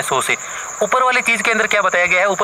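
A man speaking Hindi, with a brief pause near the start, over a constant faint high-pitched tone in the background.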